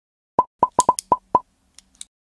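Six quick cartoon-style pop sound effects for an animated logo, coming in fast succession over about a second starting a third of a second in.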